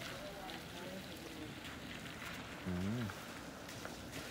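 Quiet outdoor ambience with a faint steady hiss and faint voices, and one short voiced sound, like a brief call or hum, about three seconds in.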